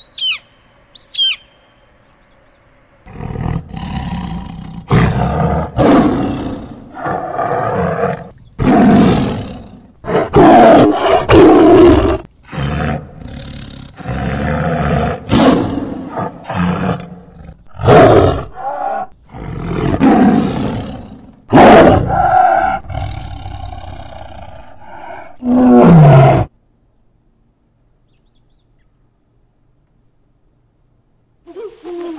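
Tiger giving a long, loud series of rough roars and growls, starting about three seconds in and stopping abruptly a few seconds before the end. At the very start there are two short, shrill, falling bird calls.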